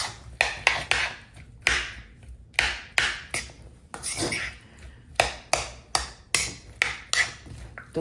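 Metal spoon stirring and tossing diced avocado salsa in a plastic mixing bowl: repeated uneven clicks and scrapes of spoon on bowl, about two to three a second, with the soft squelch of the wet chunks.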